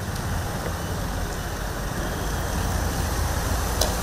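Mahindra Bolero jeep's diesel engine running as the jeep drives slowly past, a steady low rumble. A short click near the end.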